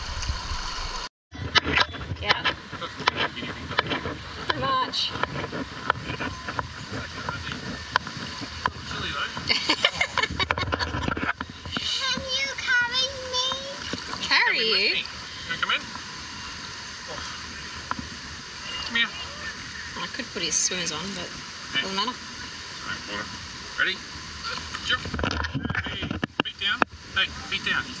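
Shallow creek water splashing and sloshing as people wade through it, with scattered voices. The audio cuts out briefly about a second in.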